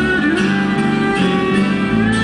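Live instrumental acoustic band music: plucked and strummed guitars under a sustained melody from a violin and a small wind instrument, with a few sliding notes.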